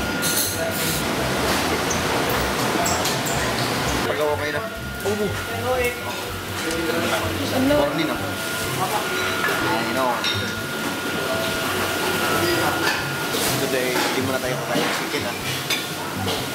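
Busy buffet dining room: voices chattering, with dishes and serving utensils clinking now and then, over background music.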